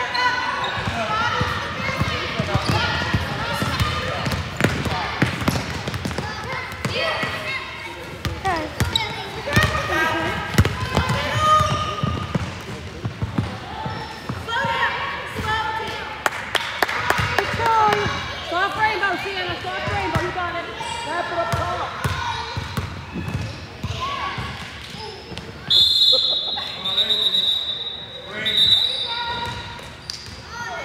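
Indistinct chatter of players and spectators echoing in a gym, with a basketball bouncing on the hardwood court. Near the end come two short, loud referee's whistle blasts.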